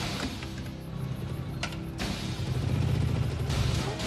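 Film soundtrack music over a motorcycle engine, the engine's low rumble growing loudest in the second half.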